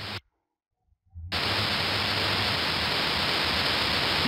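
About a second of dead silence, then a steady hiss with a low hum switches on abruptly. It is the background noise of a voice recording, heard before the narration starts.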